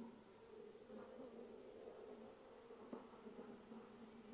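Honeybees buzzing faintly around a brood frame lifted out of a nuc hive, a low hum that comes and goes, with a light tap about three seconds in.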